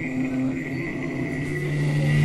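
Electric guitars sustaining a ringing note through the amplifiers with a high, steady whine over it, slowly growing louder as the next metal song starts.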